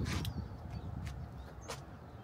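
Low outdoor rumble with two short, sharp clicks, one just after the start and one near the end.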